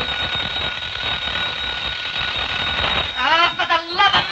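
An old candlestick telephone's bell ringing steadily for about three seconds, followed by a short burst of voice near the end.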